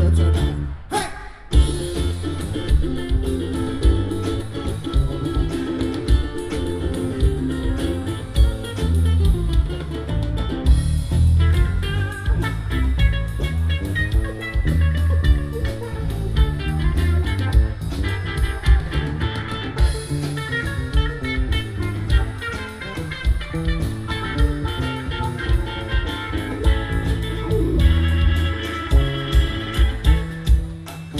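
Live band playing an instrumental passage with no singing: amplified plucked strings over a bass line and a drum kit keeping a steady beat.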